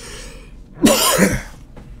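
A man coughs and clears his throat once, about a second in, after a short breath in.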